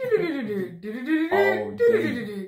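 A woman's voice, talking animatedly in long, drawn-out phrases whose pitch glides up and down.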